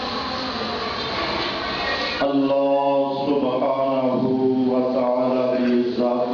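A man's voice chanting a religious recitation in long, held melodic notes through a microphone and loudspeaker, starting about two seconds in; before that, a steady noisy wash.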